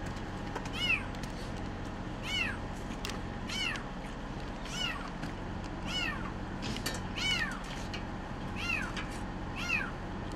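A young kitten trapped in a storm drain meowing over and over: short, high-pitched cries, about one every second or so, eight in all.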